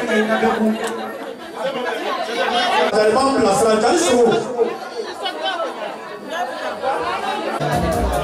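Chatter of several voices talking in a large room, with music underneath; a deep bass line comes in just before the end.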